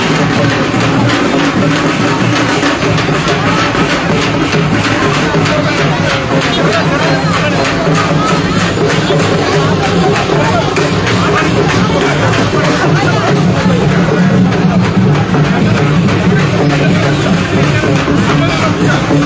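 Loud, steady procession music with drums and percussion, mixed with the voices of a crowd.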